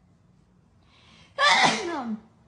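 A person sneezes once, loudly and suddenly, about one and a half seconds in. The pitch drops as the sneeze trails off.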